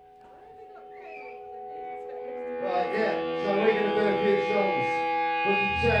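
Live punk band's electric guitar and amps sustaining held tones that swell in loudness, with a voice over them from about halfway. A low bass note comes in just before the end as the song gets under way.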